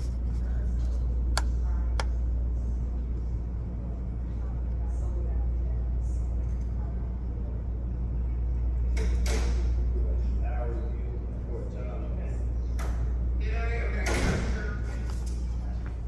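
Indistinct, muffled voices under a steady low hum, with a few light clicks.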